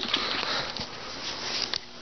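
A person breathing noisily close to the microphone, a long sniff-like breath that fades out about a second and a half in.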